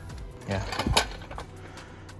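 A single sharp knock about a second in, just after a short spoken word, over faint background music.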